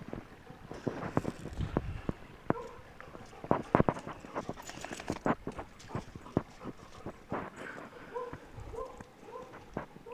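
Irregular clicks and crunches of steps on gravel as a black Labrador moves about with a tennis ball. Near the end come a few short, high whines from the dog.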